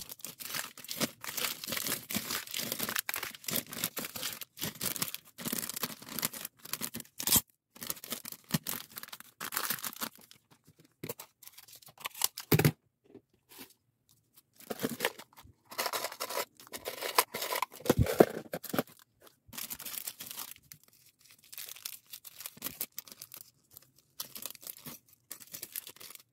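Plastic snack wrappers and clear plastic bags rustling as they are handled and packed, in long runs with quieter gaps, with a sharp click about halfway and a loud knock a little later.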